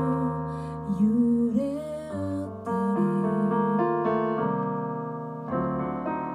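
Yamaha CP40 Stage digital piano playing chords under a woman's sung line, which ends about two seconds in; the piano then carries on alone with a run of changing chords.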